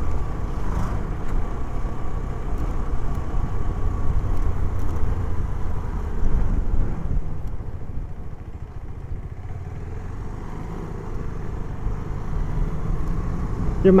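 Motorcycle being ridden: steady engine and road rumble, easing off for a couple of seconds past the middle before picking up again.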